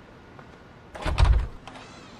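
An interior door shutting about a second in: a few sharp latch clicks and a dull, heavy thump.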